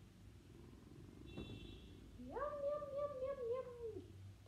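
A domestic cat meowing: one long, drawn-out meow that rises, holds and drops away, with a faint click shortly before it.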